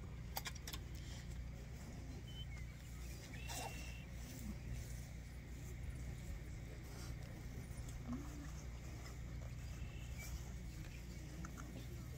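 Faint open-field ambience: a steady low rumble with a few short, high chirps and a couple of light clicks near the start.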